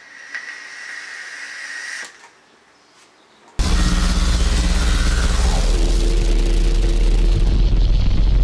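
A draw on a box-mod e-cigarette: a soft airy hiss with a faint whistle for about two seconds. After a short pause, a loud rumbling outro sound effect starts suddenly about three and a half seconds in and keeps going, with a tone sliding down partway through.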